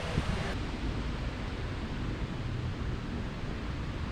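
Wind on the microphone: a steady rushing noise with a fluttering low rumble.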